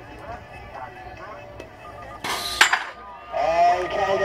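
BMX start gate: three short beeps and a longer tone from the gate's start cadence, with the metal gate slamming down about two and a half seconds in, the loudest sound. Spectators start shouting right after the gate drops.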